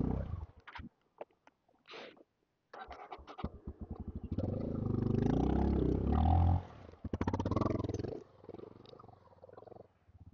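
Off-road motorcycle engine revving hard in surges as it is ridden up a slippery mud climb, the revs rising and falling, loudest in the middle and fading away after about eight seconds.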